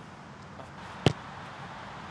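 A ball kicked once on a grass pitch: a single sharp, short strike about a second in, over faint steady outdoor background.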